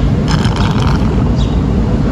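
Steady low rumble of city street traffic, with a brief hiss in the first second.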